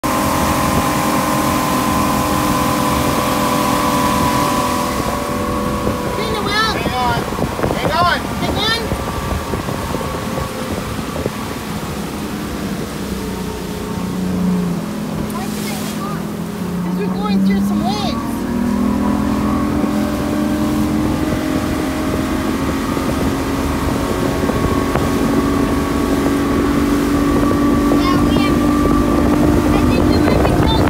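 Evinrude Intruder outboard motor running at speed over the hiss of the wake and wind on the microphone. Its pitch sinks about halfway through as the boat slows, then climbs back a few seconds later.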